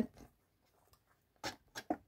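Near silence, with two brief soft noises about a second and a half in.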